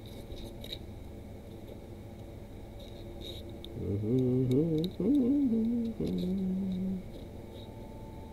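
A man hums a few wavering, rising notes for about three seconds starting around four seconds in, ending on one held note. Beneath it, faint scratches and clicks of a pen tip scoring wood grain into XPS foam.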